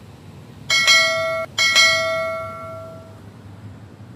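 A bell rung twice, about a second apart. Each strike is sudden, and the second cuts off the first and then rings away over a second or so.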